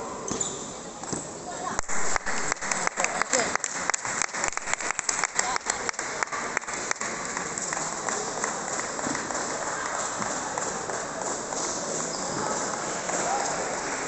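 Table tennis rally: a celluloid ball clicking off bats and the table at a quick, even rhythm of several hits a second for about five seconds, then stopping. Continuous chatter from the sports hall runs underneath.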